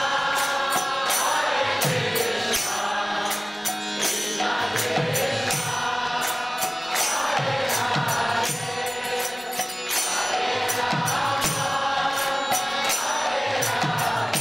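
Kirtan: a group sings a devotional mantra in chorus over a steady rhythm of small hand cymbals and a drum whose low strokes fall in pitch.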